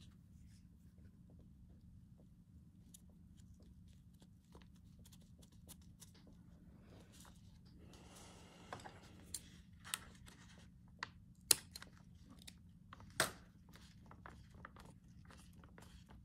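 Faint rustling and handling of paper journal pages and lace, with scattered light taps, a short rustle about halfway through and a couple of sharp clicks near the end, over a low steady hum.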